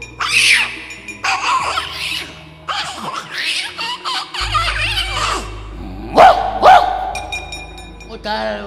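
Javanese gamelan accompaniment to a wayang kulit shadow-puppet scene, with gruff shouted cries over it. A deep gong-like low tone comes in about four and a half seconds in, and a fine metallic clatter runs near the end.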